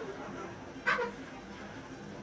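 A dog barking once, short and sharp, about a second in, over a steady background of faint voices from the town.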